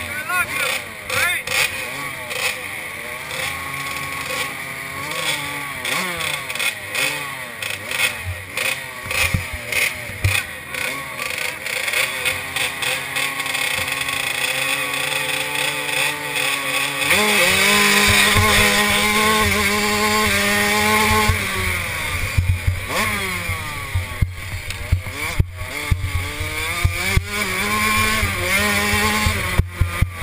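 Two-stroke 65 cc motocross bike engines revving in bursts at the starting line, then, about seventeen seconds in, the near bike's engine goes to full throttle and accelerates hard, its pitch rising and dropping with each upshift.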